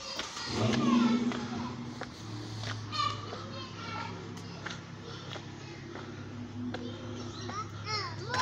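Children playing and calling out, their high-pitched voices rising and falling, the clearest call about three seconds in, over a steady low hum.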